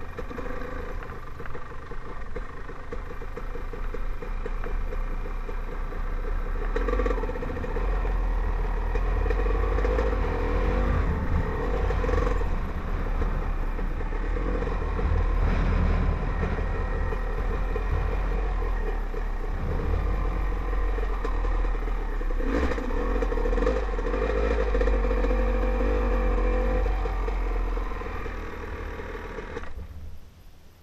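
Dirt bike engine running while ridden, heard close-up from the rider's helmet, with the revs rising and falling as the throttle opens and closes. The engine sound drops away in the last couple of seconds as the bike slows.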